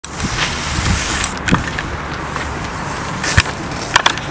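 Steady outdoor rumble and hiss of wind on the microphone, broken by two sharp knocks of the camera being handled, about a second and a half in and near the end.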